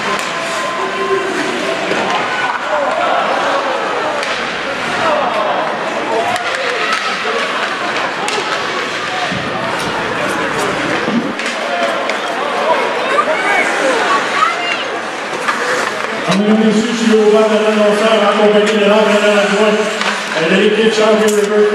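Ice hockey game in a small arena: crowd and bench voices chattering, with sharp clacks of sticks and puck. About four seconds before the end a loud sustained pitched tone comes in and holds over the play.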